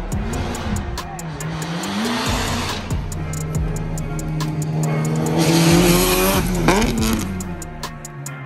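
A car engine revving hard and held high, with tyre squeal as the car slides, over background music with a steady beat. The revs dip and sweep near the end.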